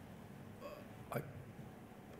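Quiet room tone broken a little after a second in by one brief vocal sound from a man, a short, quick upward-pitched noise like a clipped 'hm' or a half-laugh.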